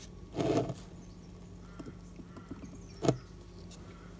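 Handling noise as a camera is set down and positioned: a short rustle about half a second in, a few faint ticks, and a sharp click about three seconds in, over a low steady hum.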